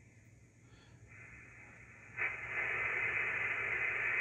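Steady receiver hiss of band noise picked up by a portable magnetic loop antenna, playing from an HF transceiver's speaker. It comes up faintly about a second in, then jumps suddenly louder a little after two seconds and holds steady as the radio is set to CW.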